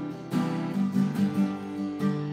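Acoustic guitar strummed, a chord struck again several times and left ringing between strokes.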